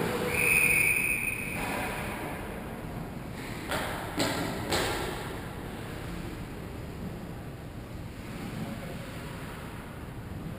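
A whistle blown once near the start, a steady high tone lasting just over a second, over the open noise of an ice rink. About four seconds in come three sharp knocks from the play on the ice.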